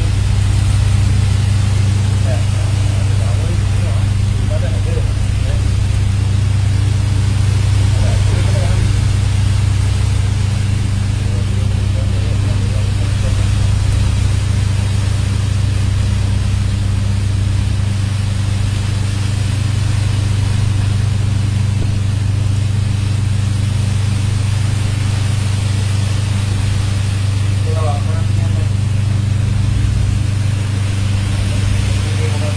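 A vessel's engine running with a steady low drone, under the hiss of water-cannon spray and churning sea; the deepest part of the hum shifts about halfway through.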